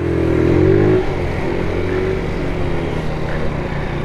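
GY6 single-cylinder four-stroke scooter engine running under throttle: its note rises a little, then settles lower and steadier after about a second as the throttle eases, with wind noise on the microphone.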